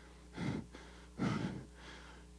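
A man breathing into a handheld microphone: two short breaths, a little under a second apart, over a low steady hum.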